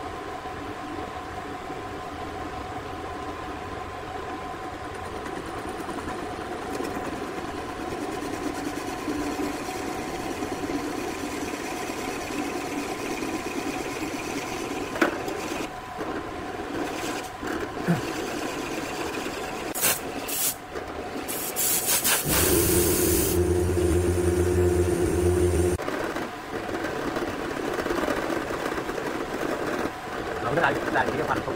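Drill press motor running with a steady hum while a Forstner bit bores into a wooden block, shavings scraping off. A few sharp knocks come a little past the middle, then a louder, lower hum for about three seconds.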